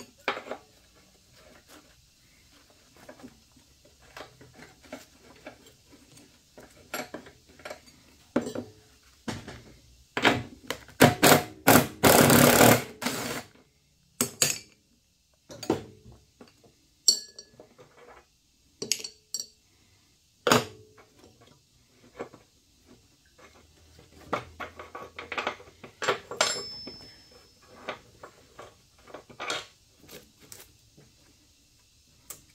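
Metal clinks and knocks of a wrench and bolts on a steel mower deck's pulleys, with a loud, rapid hammering burst of a cordless impact driver lasting a few seconds, from about ten seconds in, as a pulley bolt is driven loose.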